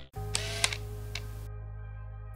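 A low steady hum with three short, sharp clicks in its first second or so.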